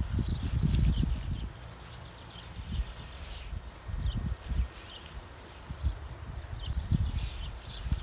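Wind rumbling in gusts on the microphone, strongest in the first second or so, with soft thumps and faint rustles as heads of lettuce are cut and handled.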